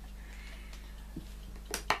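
Quiet room with a steady low hum, then two sharp clicks close together near the end, from a whiteboard marker being handled at the board's tray.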